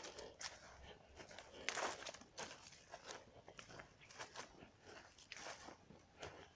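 Faint footsteps crunching on dry grass and leaf litter, irregular, with one louder crunch about two seconds in.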